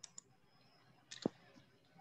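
A few faint, sharp clicks at a computer, about four in all, the loudest a little over a second in. They come from operating the computer while setting up screen sharing in a video call.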